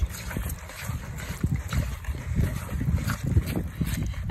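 A wire whisk stirring a thick cornstarch-and-baking-soda paste in a plastic bowl: irregular soft knocks and scrapes. Under it runs a low rumble of wind on the microphone.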